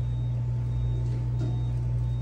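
Steady low hum, unchanging in level, with a faint steady higher tone above it.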